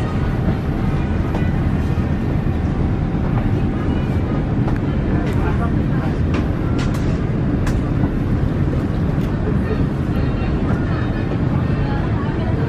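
Steady rushing air-conditioning noise inside the cabin of an Airbus A350 during boarding, with a few sharp clicks in the middle.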